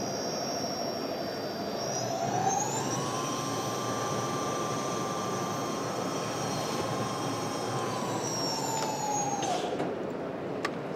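Electric motorcycle's motor and rear wheel whining as the wheel spins freely under throttle. The whine rises in pitch about two seconds in as it speeds up, holds, then falls away near the end as the throttle is released.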